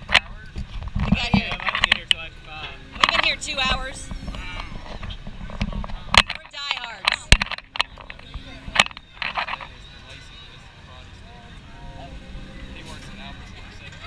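Riders on a fairground ride laughing and calling out, with several sharp knocks in the first half. The last few seconds are quieter, with a low steady rumble.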